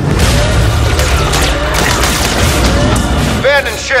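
Film-trailer sound mix of music with heavy booms and crashing impacts over a steady low rumble, and a short voice near the end.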